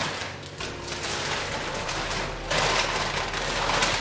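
Tissue paper and a plastic shopping bag rustling and crinkling as a wire fruit basket is unwrapped, louder in the last second and a half.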